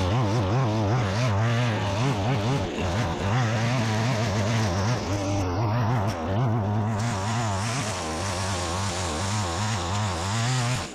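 Petrol string trimmer's small engine running at high revs while its line cuts long grass. The pitch wavers up and down continuously as the cutting load on the line changes.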